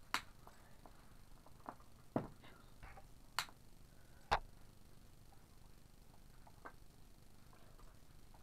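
A few scattered light clicks and knocks from hands handling a tool and objects on a wooden tabletop, the sharpest about four seconds in.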